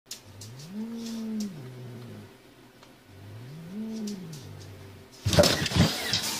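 A cat giving two long, low yowls, each rising in pitch, holding, then falling, about a second apart. Near the end comes a sudden loud, noisy burst.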